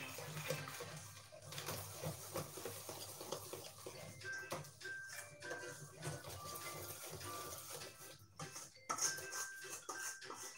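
A utensil stirring egg and flour batter in a stainless steel mixing bowl, with a run of irregular clicks and scrapes against the metal, over quiet background music.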